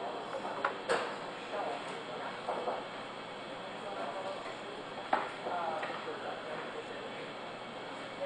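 Indistinct background chatter of several people talking in a room, with a few light knocks about one second in and again about five seconds in.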